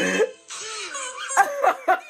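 A man laughing hard, breaking into a quick run of short, cough-like bursts of laughter in the second half.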